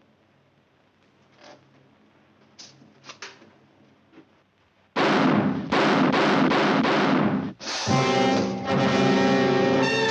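A few faint soft knocks in a quiet room, then about halfway through a sudden loud orchestral film-score sting: a run of heavy repeated hits giving way to held brass chords.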